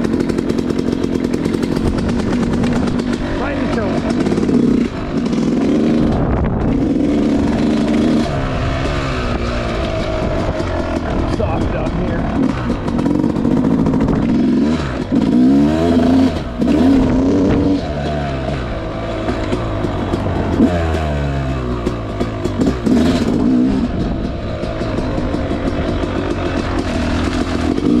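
Yamaha YZ250X two-stroke dirt bike engine being ridden, revving up and down over and over with its pitch rising and falling through the gears.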